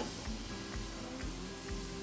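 Oiled tomato, onion and jalapeño pieces sizzling on the hot grate of a charcoal grill: a steady hiss just after they land. Soft background music plays under it.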